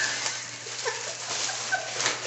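A woman laughing: breathy, broken giggles.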